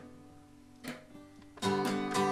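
Acoustic guitar in a quiet lull of the song: held notes die away, a light stroke just before a second in, then a strummed chord about one and a half seconds in that rings on.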